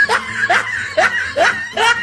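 A person laughing in a string of short, high giggles, each one rising in pitch, about two a second.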